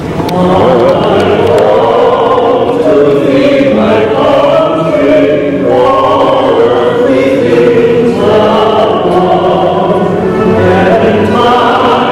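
A choir singing in sustained, flowing phrases, without a break.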